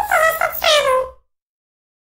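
A high-pitched voice-like call in a few short syllables that glide downward in pitch, cutting off suddenly just over a second in.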